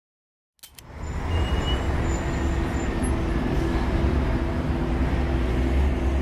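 A steady low rumble with a faint hum over it, cutting in suddenly out of silence about half a second in, with a sharp click as it starts.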